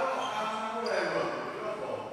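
Indistinct voices in a large, echoing sports hall, with a short high squeak about a second in, typical of sneakers on a wooden badminton court.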